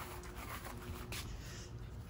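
Faint rubbing and scuffing: a red-footed tortoise being reached for and picked up off wet concrete by hand, with some light taps.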